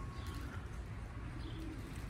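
Faint cooing of domestic racing pigeons.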